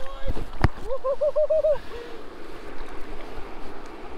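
Two sharp knocks, then a man's excited wavering whoop of about six quick pulses, then a steady wash of lake water at the rocky shoreline as a bass is landed by hand.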